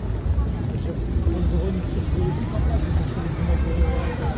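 Street ambience: a constant low rumble with indistinct voices of people nearby.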